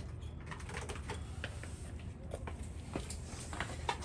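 Quiet backyard ambience: a faint steady low hum with a few scattered faint ticks.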